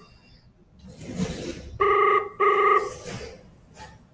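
Telephone ringback tone of an outgoing call, heard through the softphone: one double ring of two short steady tone bursts about a fifth of a second apart, about two seconds in. It signals that the dialled number is ringing.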